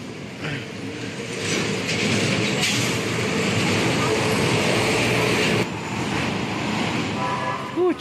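A motor vehicle running close by: a steady engine and road noise that swells about a second in and cuts off abruptly about five and a half seconds in.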